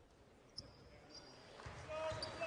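Quiet arena, with a single basketball bounce on the hardwood court about half a second in and a short high squeak a moment later.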